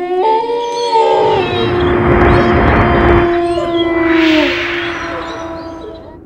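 Wolf howls as a sound effect: several long, held notes overlapping, one sliding down in pitch about three and a half seconds in, under rushing whooshes and a deep rumble that swell twice and then fade.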